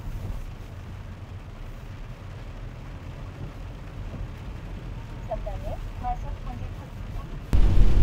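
Low rumble of a Kia car's engine and tyres on a wet road, heard from inside the cabin while driving in rain. Near the end it turns suddenly much louder.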